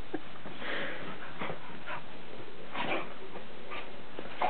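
Damp English springer spaniel rubbing and burrowing into a bed comforter: soft rustling of the bedding in scattered bursts, with the dog sniffing into the covers.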